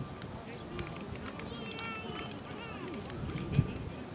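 Indistinct outdoor chatter of children's and adults' voices, with a few high calls about two seconds in and a short knock near the end.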